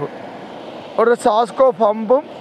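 Steady road noise from heavy trucks passing on a highway, then a person starts speaking about a second in.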